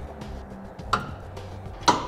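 Sharp metallic clicks of a three-quarter inch socket and wrench tightening a hitch mounting bolt, one about a second in and a louder one near the end, over a low steady hum.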